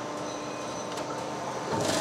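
Steady machine hum from a perforated cable tray production line standing by at its punching press, with one faint click about halfway through and no press strokes.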